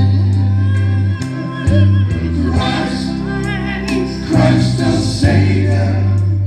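Men's vocal group singing in harmony into microphones, over deep held bass notes that step to a new pitch every second or so.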